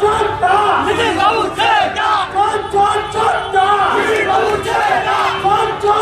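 A crowd of many people shouting at once, their voices overlapping without a break.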